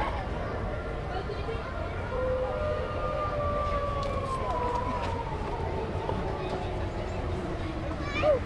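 A long whistle blast, two or three tones sounding together, sliding slowly down in pitch as it fades.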